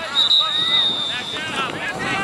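A referee's whistle blown in one long blast, ending about a second and a half in, over people shouting across the field.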